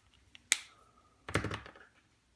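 Handling of a highlighter pen: a single sharp click about half a second in, like a cap snapping on, then a short patch of small clicks and rustle near the end.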